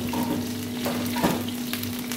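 Chopped garlic sizzling in olive oil in a steel wok over a gas burner, with a steady low hum underneath. A single sharp knock about a second in.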